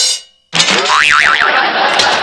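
A brief burst of noise that dies away, then a cartoon 'boing' sound effect whose pitch wobbles up and down, running into background music.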